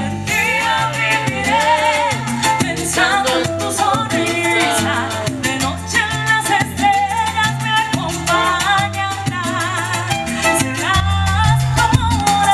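Live salsa band playing: a woman sings the melody over a stepping bass line, with busy conga and drum-kit percussion.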